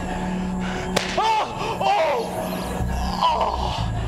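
One sharp crack about a second in, over steady background music, followed by brief voices rising and falling in pitch.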